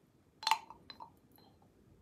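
Tableware clinking: one sharp, briefly ringing clink about half a second in, then two softer clinks.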